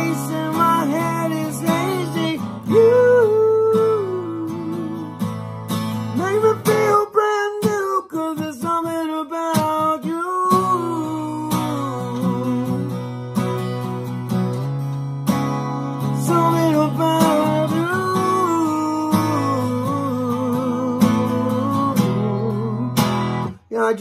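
A man singing a melody while strumming chords on an acoustic guitar. The chords drop out for a few seconds about seven seconds in, then the song carries on and stops just before the end.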